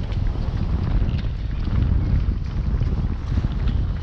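Wind buffeting the camera's microphone: a loud low rumble that swells and dips.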